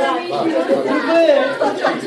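Several people talking at once: overlapping chatter of voices in a room.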